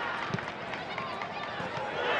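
Football match audio during open play: stadium crowd noise with voices and a couple of dull thuds.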